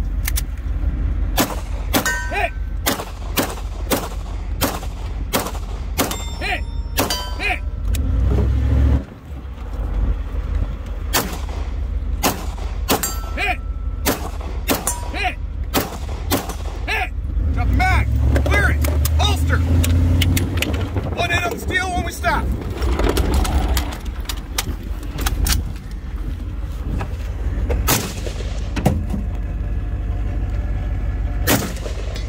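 Long string of pistol shots, about two a second, fired from the back of a moving HMMWV over the vehicle's steady low rumble, with a short pause about nine seconds in.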